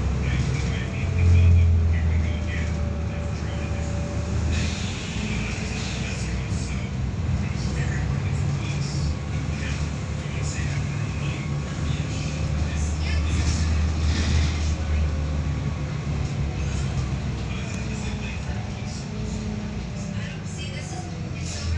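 Volvo B7RLE bus's diesel engine and drivetrain heard from inside the passenger cabin while under way: a steady low drone that swells twice as the bus pulls, with a faint whine that rises and falls.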